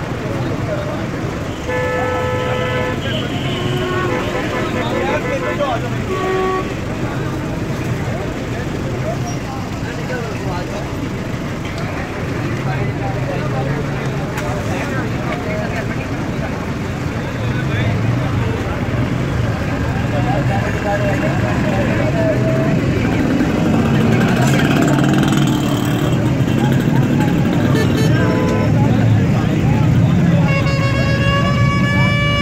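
Busy street traffic with a steady din of passing vehicles and car horns honking, a few times in the first several seconds and again near the end, with voices in the background.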